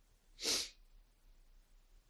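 A single short, sharp burst of breath from the lecturer, about half a second in, sneeze-like.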